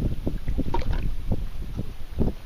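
Wind buffeting the microphone as a gusty low rumble while paddling on a lake, with a short splash of water a little under a second in.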